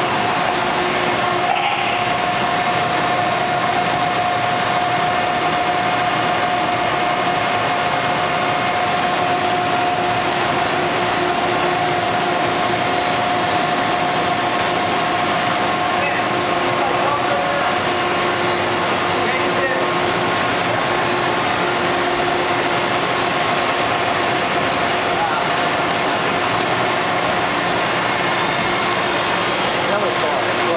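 Steady machine-shop machinery noise: an even mechanical rush with a constant mid-pitched whine, and a lower hum that comes and goes.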